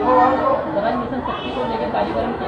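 Indistinct chatter of several people talking in a room, with no clear single voice.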